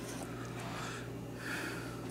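Wooden spoon stirring cooked pasta and butter in a stainless-steel pot, soft and faint, over a steady low hum.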